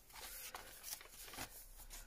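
Faint rustling and soft handling noises of paper pages being turned in a handmade junk journal, a few short brushes of paper.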